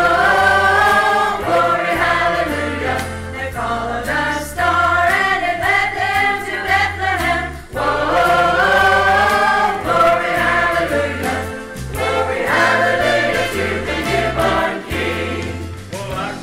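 A church choir singing a gospel Christmas song, sustained sung phrases over a stepping bass accompaniment.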